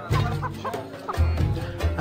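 Chickens clucking in short, quick calls over background music with a pulsing low bass.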